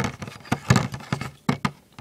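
Metal Beyblade spinning tops clicking and clacking as a hand picks them up and sets them down on a plastic stadium floor: a handful of short, sharp taps.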